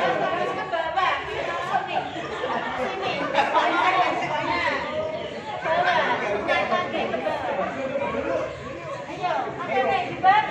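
Many people talking at once: the overlapping chatter of a group, with no single voice standing out.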